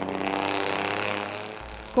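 A motor vehicle engine running close by in street traffic, one steady pitch that fades away about a second and a half in.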